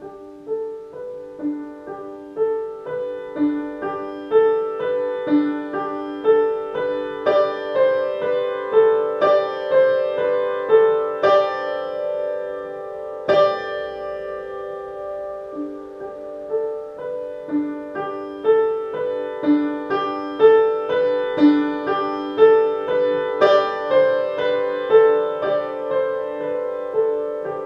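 Upright acoustic piano playing a slow, gentle technique piece: a steady repeating figure of middle-register notes, struck evenly and left ringing into one another, with one more strongly struck note about halfway through.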